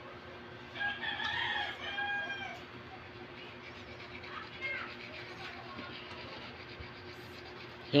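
An animal calling: one long, pitched call about a second in that lasts under two seconds, then a short rising call near five seconds, over faint steady background hum.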